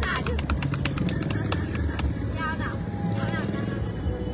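People's voices over a steady low rumble, with a few sharp clicks early on; no piano playing.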